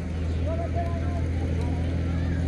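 A steady low machine hum with faint voices in the distance.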